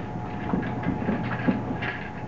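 Handling noise of a simulated spacesuit backpack being lifted onto the shoulders of a heavy canvas suit: fabric rustling and a few light knocks and clatters, the loudest about a second and a half in, over a steady background hum.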